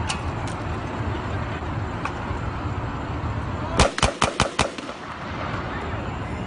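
A rapid volley of about six handgun shots fired by police officers in under a second, about four seconds in, over a steady noisy outdoor background.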